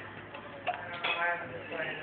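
Indistinct conversation of people in the room, with a sharp click or two less than a second in.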